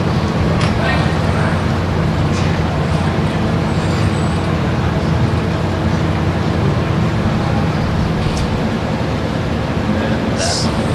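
Steady low rumble of a conference hall's room noise, with faint audience murmur and a few small knocks.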